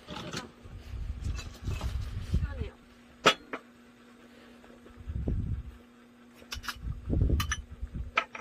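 Handling noise as tableware is set down on a low wooden table: soft low thuds and a few sharp clicks, the loudest one about three seconds in. A faint steady low hum runs underneath.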